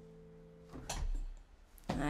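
The last held chord of a digital piano fading out; the sustained notes stop abruptly about three-quarters of a second in. Brief bumps and rustles of movement follow, twice.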